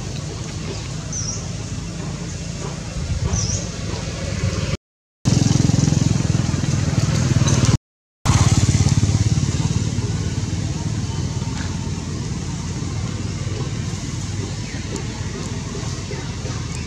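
Steady low outdoor rumble that swells through the middle and then eases off, cutting out completely twice for a moment.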